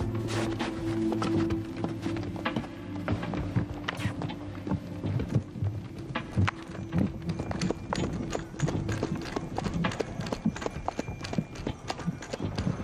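Hoofbeats of a horse pulling a wooden sleigh over snow, an uneven run of soft knocks, over background music with low held notes that fade in the first half.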